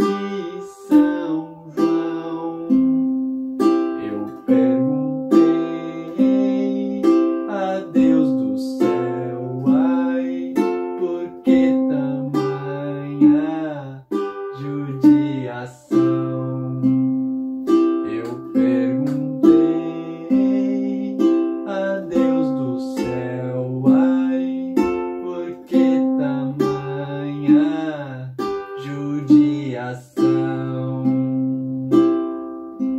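Soprano-style ukulele fingerpicked in a 'puxa 3' pattern: strings 4, 2 and 1 plucked together, then string 3 alone, in a steady repeating rhythm over C, F and G chords. A man sings the melody along with it.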